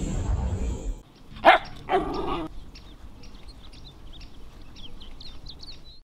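A dog barks once about one and a half seconds in, with a second shorter call just after, following a second of low rumbling noise. A run of short, high chirps follows until the end.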